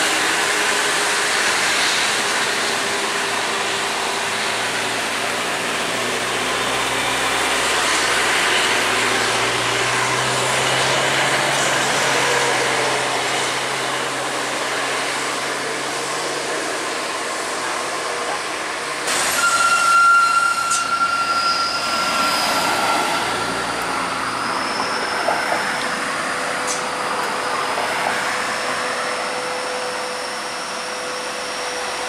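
Diesel engines of heavy buses and trucks working up a steep grade with steady traffic noise, a low engine drone strongest in the first half. About two-thirds through a sudden steady high tone cuts in and is loudest for a couple of seconds.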